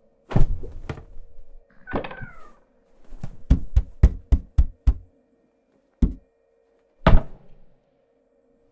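Comic scuffle sound effects in thuds and knocks: a sharp thunk, a short falling squeal, then a fast run of about seven knocks, ending in two more thumps, the last one loud. A faint steady hum runs underneath.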